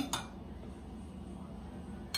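A metal spoon clinks briefly against a ceramic bowl near the start, a short double click, followed by faint room noise.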